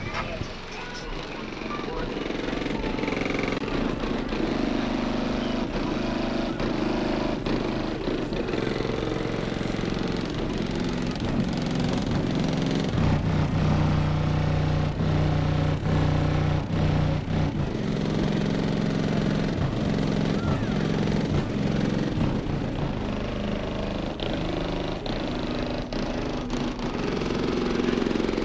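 Indistinct voices over a steady low hum, with occasional clicks.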